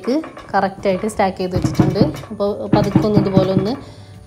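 A woman narrating in Malayalam, with light background music under her voice.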